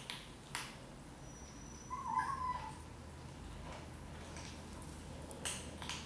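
A Siamese cat gives one short meow about two seconds in, with a couple of faint soft clicks before and after it.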